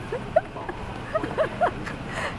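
An animal's short whining cries, several in a row, each rising and falling in pitch, with a single sharp click about a third of a second in.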